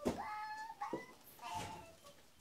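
A short series of high, whining cries: one rising at the very start and held for most of a second, then shorter ones about one and a half seconds in.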